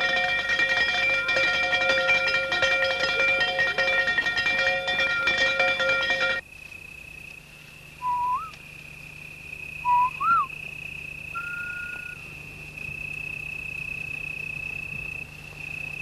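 Film score music with plucked strings for the first six seconds, ending with an abrupt cut. Then a steady high insect drone with two short rising whistles, a couple of seconds apart, and a brief level whistle after them.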